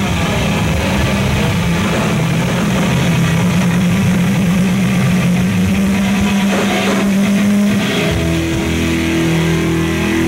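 Thrash metal band playing live: heavily distorted electric guitars and bass sustain a low note over drums. About eight seconds in they change to a new, higher held chord.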